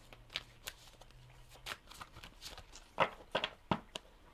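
A deck of oracle cards being shuffled by hand: a run of short papery snaps and slaps that comes thicker and louder near the end.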